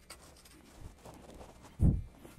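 Handling noise from restringing an Ibanez SR300M electric bass: faint rubbing and scraping of the strings and hardware, then one short, loud, low thump near the end.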